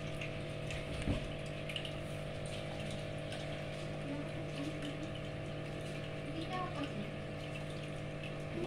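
Steady hum of a small motor under a faint watery wash, with a single thump about a second in.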